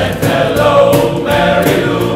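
Male voice choir singing a pop-song arrangement, several voice parts in harmony.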